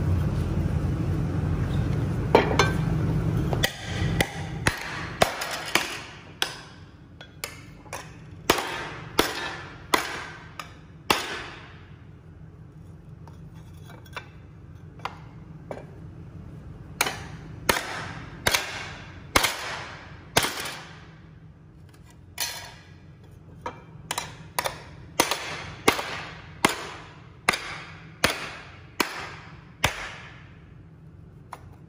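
Ball-peen hammer striking a laser-welded 2 mm aluminium plate on a wooden pallet, bending it to test the strength of the weld. The strikes are sharp and metallic, each ringing briefly, in uneven runs with a lull in the middle. A steady low noise fills the first few seconds before the hammering starts.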